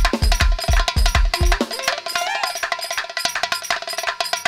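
Balkan Roma dance band music with a fast kick drum beat of about four a second and sharp, cowbell-like percussion; about a second and a half in the kick drops out, leaving the percussion and a melodic line.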